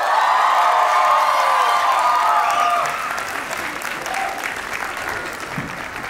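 Audience applauding, with high-pitched shouts and cheers from the crowd over the first half, then clapping alone, a little quieter.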